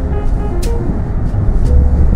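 Background music: held keyboard notes over a heavy bass, with a drum hit about two-thirds of a second in.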